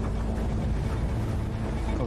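Steady wind-and-sea noise over a low, continuous rumble of a warship underway.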